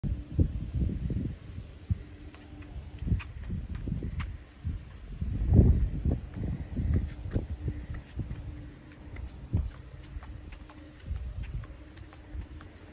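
Footsteps of someone walking with a handheld phone, with irregular low rumbling thumps of wind and handling on the microphone, loudest about five and a half seconds in, and scattered light clicks.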